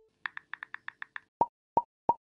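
Animated-graphic pop sound effects: a quick run of about eight light ticks, then two louder plops about a third of a second apart.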